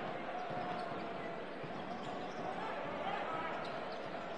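Basketball game sound in an arena hall: steady crowd noise with voices, and the ball being dribbled on the hardwood court.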